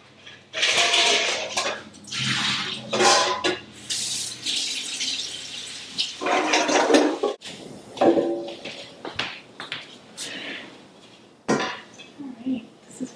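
A kitchen tap running and water splashing into a stainless steel bowl of clams as the rinse water is changed, coming in several bursts with a longer steady pour in the middle. There is a single sharp knock a little past halfway.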